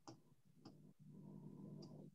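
Near silence with about three faint, short clicks from a computer being worked, as a file is searched for, and a faint low hum in the second half.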